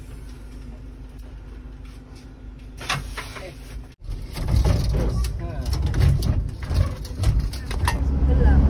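Steady low rumble of a van's engine idling. About four seconds in, a cut brings a louder rumble with people's voices and a few clicks and knocks.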